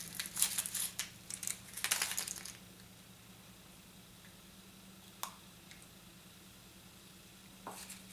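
Foil wrapper crinkling and tearing as it is peeled off a chocolate surprise egg, for about the first two and a half seconds. Then it is nearly quiet apart from two short clicks, one in the middle and one near the end.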